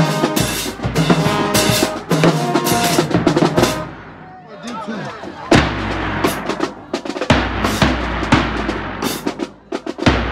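Marching band playing in the stands, horns over snare and bass drums and cymbals. It drops away about four seconds in, then the drums come back in with strong, evenly spaced bass drum hits.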